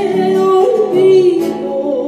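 A Peruvian huayno song: a woman sings a long held note that wavers and bends in pitch over strummed acoustic guitar, the voice dying away about three quarters through while the guitar carries on.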